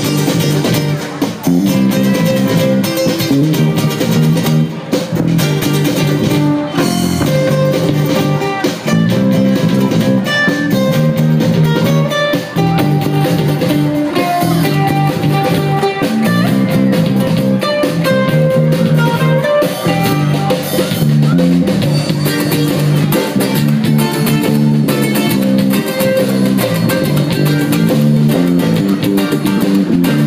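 Live ukulele band playing an instrumental passage with no singing: strummed ukuleles over electric bass guitar and a drum kit, in a steady beat.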